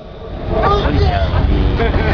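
A man's voice speaking over a steady low rumble.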